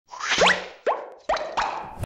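Logo-animation sound effects: a rising whoosh, then four short pops, each gliding upward in pitch, in quick succession.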